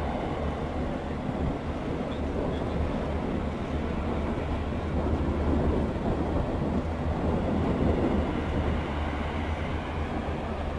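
LCAC air-cushion landing craft (hovercraft) running ashore on the beach: a steady, deep rumble with a rushing noise from its engines, lift fans and propellers, with no breaks or changes in pitch.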